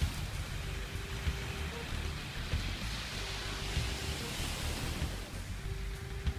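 Small waves washing onto a sandy beach, with wind rumbling on the microphone. A faint steady tone comes and goes three times.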